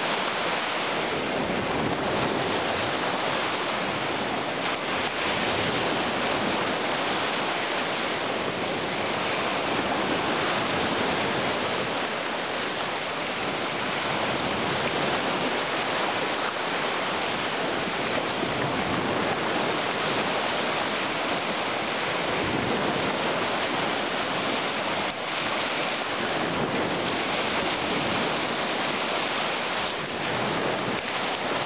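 Lake surf washing onto the shore, a steady, unbroken hiss.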